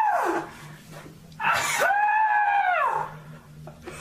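A man crying out in pain from a cyst behind his ear being squeezed. A cry trails off just after the start, then a long, high wail rises and falls for about a second and a half.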